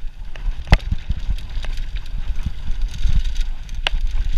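Mountain bike riding fast down a dirt trail, heard on the rider's action camera: a steady low rumble of tyres on dirt and wind on the microphone, with sharp clacks from the bike going over bumps, the loudest under a second in and again near the end.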